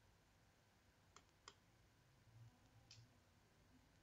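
Near silence with a few faint computer mouse clicks: two close together about a second in, and one more near three seconds.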